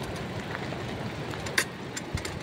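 Steady rushing of water pouring over a river weir, with a single sharp click about one and a half seconds in.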